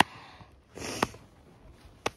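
A person's short sniff close to the microphone about three-quarters of a second in, ending in a sharp click, with another click at the very start.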